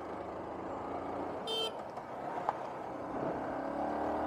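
Motorcycle engine running at road speed with wind rushing over the microphone, and a short horn toot about a second and a half in.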